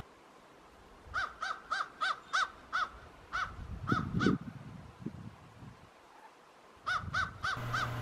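A crow cawing in quick runs of short calls, about three a second, with a break in the middle and another run near the end. Some low rustling comes in around the middle.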